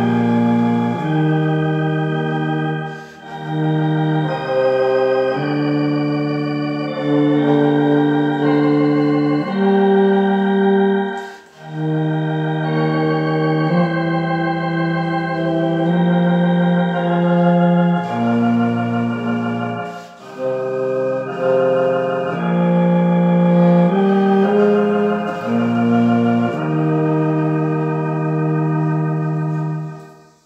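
Electronic organ playing a slow hymn in long held chords, phrase by phrase with brief breaks between phrases; the music stops at the very end.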